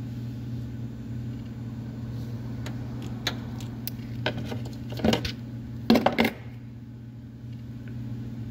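Small plastic clicks and scrapes of a 20-amp mini blade fuse being worked out of a truck's underhood fuse box, loudest around five and six seconds in. A steady low hum runs underneath.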